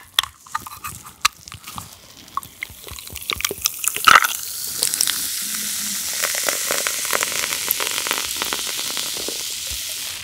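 A carbonated lemon soda can opened by its pull tab, a few clicks and a sharp clink near four seconds, then the soda poured over ice into a glass, fizzing steadily from about five seconds on.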